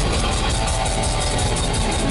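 Live band playing an instrumental passage on electric guitar, bass guitar and drum kit, with no singing.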